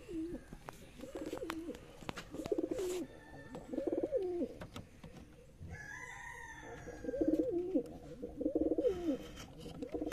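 Domestic pigeon cooing at its nest: about five low coos, each falling away at the end, with a pause in the middle.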